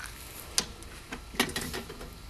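A few sharp clicks and knocks from the lid of a homemade solar oven as it is handled: a loud one about half a second in, another near a second and a half with a couple of lighter ones after it.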